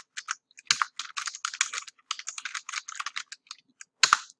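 Computer keyboard typing: a fast run of keystrokes entering a short line of text, thinning to a few scattered key presses near the end.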